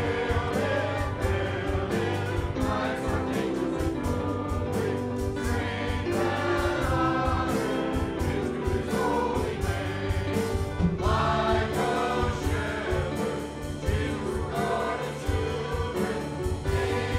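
Church choir of men and women singing a gospel hymn, led by a male song leader at the pulpit.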